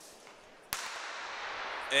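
A single starting-pistol shot about 0.7 s in, sharp and full-range, signalling the start of the race, followed by a steady rush of crowd noise in the arena.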